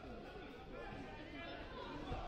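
Indistinct chatter of many voices from the spectators in a large sports hall, with no single clear speaker.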